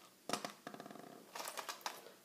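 A hand rummaging among small items in a leather cosmetic pouch: a knock, a quick run of small rattling clicks, then a few more clicks as a plastic pen is pulled out.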